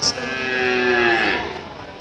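A cow mooing: one long call that falls slightly in pitch and fades out near the end.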